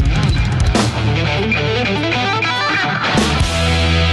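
Electric guitar playing a lead line over bass guitar and drums in an instrumental rock piece, with a quick run of notes climbing in pitch about two seconds in. Drum hits land about a second in and again near the end, where the band settles on a long held note.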